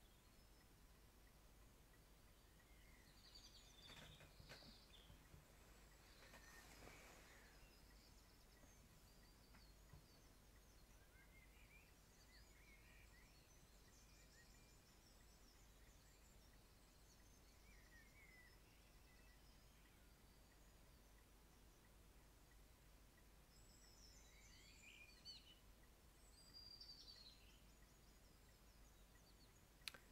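Very faint recorded birdsong ambience: scattered short chirps and trills from small songbirds, coming and going in a few clusters over near silence.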